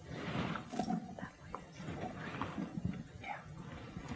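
Two people talking quietly and whispering close to a clip-on microphone, with soft, irregular bumps.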